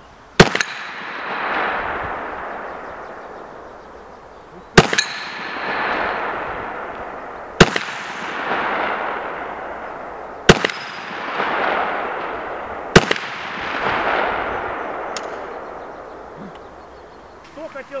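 Five gunshots a few seconds apart. Each ends in a long rolling echo that swells and fades over two to three seconds.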